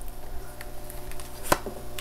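An oracle card laid down on the cloth-covered table, one sharp click about one and a half seconds in, over a faint steady hum.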